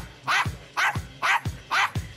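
A Yorkshire terrier barking, about five short, sharp barks in a steady rhythm of a little over two a second.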